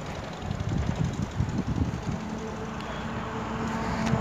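Wind buffeting a phone microphone over the noise of road traffic, with gusty low rumbles in the first half and a steady low hum coming in about halfway.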